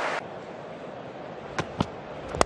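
Cricket ground ambience picked up by the stump microphone: a low, steady crowd murmur after a brief burst of crowd noise cuts off at the start. Near the end come two sharp knocks in quick succession, the bowler's feet landing in his delivery stride.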